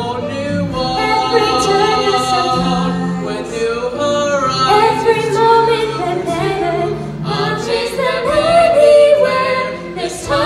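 A mixed choir of boys and girls singing together, part of a Disney song medley.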